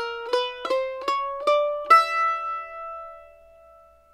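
Red Diamond Vintage 22F F-style mandolin picked in single notes: a chromatic connecting line climbing by half steps, about two to three notes a second. It ends about two seconds in on a note left to ring and fade.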